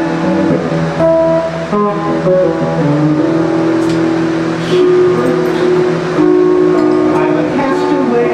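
Guitar playing an instrumental passage of plucked notes and chords, with several notes held and ringing for a second or more.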